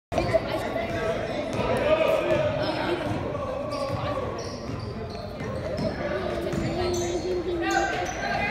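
Live basketball play in a gymnasium: the ball bouncing on the hardwood court amid indistinct voices of players and spectators, all echoing in the large hall.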